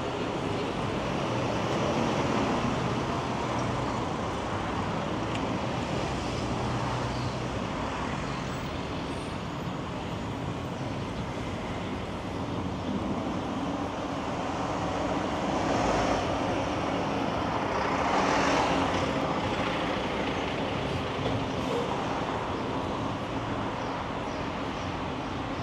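Road traffic: cars, SUVs and vans driving past close by in a steady stream, swelling as vehicles pass, loudest about three quarters of the way through.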